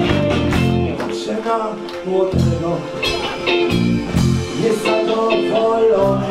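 Live wedding-band dance music with a man singing into a microphone.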